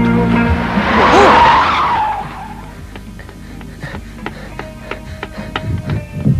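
Cartoon sound effect of a car's tyres screeching in a skid, loudest from about one to two seconds in, over background music.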